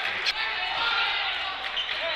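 Gymnasium sound of a basketball game in play: a steady hum of crowd and court noise, with a ball bouncing on the hardwood floor.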